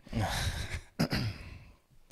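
A man breathing out audibly into a close microphone, like a sigh, in two breathy exhales; the second starts sharply about a second in and fades away.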